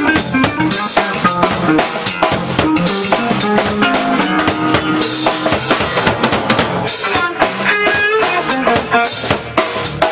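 A live jazz-funk trio playing: a drum kit with busy snare, rimshot and bass drum hits under a six-string electric bass line and an archtop electric guitar.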